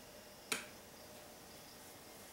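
A single sharp click about half a second in: a light switch being flipped, turning on the room lights.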